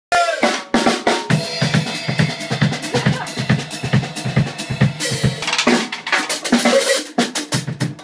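Drum kit and electric bass playing a busy groove together, with dense rhythmic drum hits over low bass notes; they stop abruptly just before the end.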